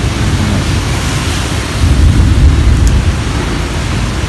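Wind noise on the microphone: a steady rumbling hiss that swells about two to three seconds in.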